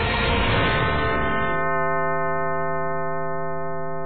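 Closing theme music of a TV title sequence: a dense swell that, about one and a half seconds in, settles into one long sustained tone held to the end.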